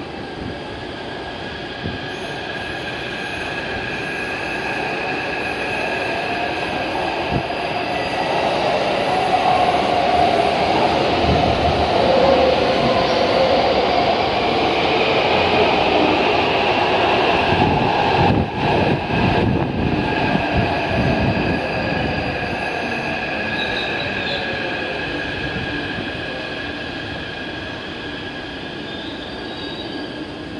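Taipei Metro C371 refurbished train pulling into an underground station and braking to a stop. Its steady whine and wheel rumble grow louder toward the middle and ease off as it slows.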